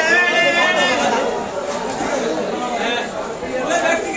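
Several voices talking over one another: busy background chatter, with one voice raised high and drawn out in the first second.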